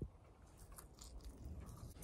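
Faint chewing of a mouthful of fries, with a few soft crunches.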